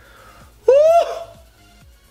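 A man's short, excited "woo!", rising in pitch, about two thirds of a second in, over quiet background music with a steady beat.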